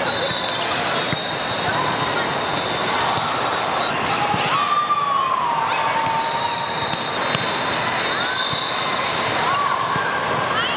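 Volleyball being played in a large, echoing hall: the steady din of many voices and players' calls, with scattered ball hits and short sneaker squeaks on the court. A faint steady high tone runs through much of it, and a gliding tone sounds once in the middle.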